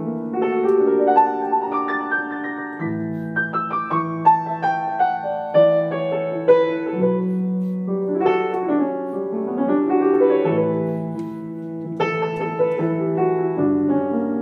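Solo piano improvising, recorded on a phone: held low chords that change every few seconds under a melody of single notes, with quick runs of notes in places.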